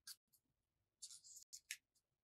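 Faint rustling of paper as a small folded, cut paper flower is opened out by hand: a brief rustle at the start, a longer one about a second in and a short one near the end.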